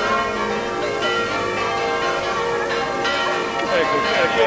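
Several bells ringing together, a dense wash of overlapping, sustained ringing tones.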